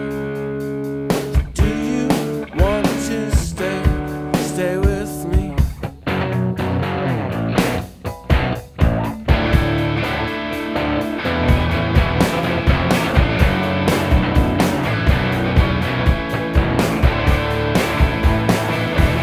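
Instrumental break of a rock song: guitar notes bending in pitch over sparse drum hits, then the full band comes in, denser and steady, about halfway through.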